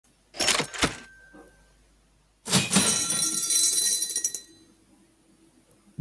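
Two sharp clinks about half a second in, then about two seconds of jangling, ringing metallic clatter.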